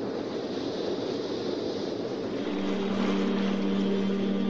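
A steady, wind-like rushing noise from an intro sound effect. About halfway through, a held low musical drone comes in under it.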